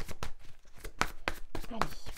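A tarot deck being shuffled by hand, packets of cards dropped from one hand onto the other, giving a quick, irregular run of sharp card slaps, about five a second.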